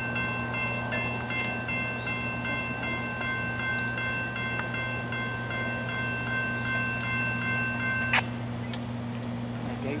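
Norfolk Southern intermodal train led by two GE Dash 9-40CW diesel locomotives approaching, a steady low rumble. Over it sit several steady high tones that cut off with a click about eight seconds in.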